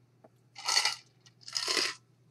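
A man drinking from a stainless steel tumbler, with the drink and ice shifting inside it: two short, noisy bursts about a second apart.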